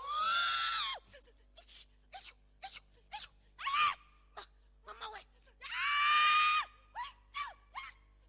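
A woman screaming and wailing as she is prayed over for deliverance: a long high cry at the start and another just past the middle, each about a second long, with shorter rising yelps and gasps between them.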